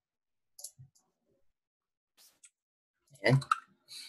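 A few faint, separate clicks of a computer mouse and keyboard as items are selected and deleted, then a short spoken word.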